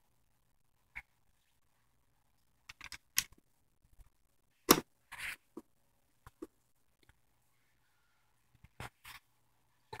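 Sparse small clicks and knocks of a screwdriver and the plastic fan-blade hub as the blade is screwed back onto a box fan's motor shaft, the loudest a sharp knock almost five seconds in.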